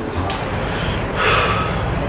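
A short, noisy breath from a person, like a sharp intake or sniff, about a second in, over a low steady hum.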